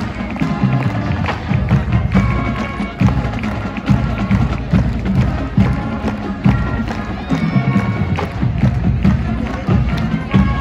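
Marching band playing, with held brass chords over a steady drum beat, and some crowd noise underneath.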